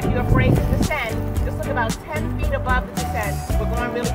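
Music with a singing voice over a steady beat.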